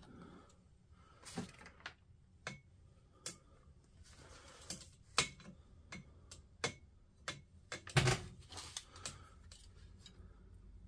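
Irregular sharp clicks and taps of bare copper lead ends and multimeter probe tips touching the metal terminals and nickel strips of a lithium-ion battery pack, with the loudest cluster about eight seconds in.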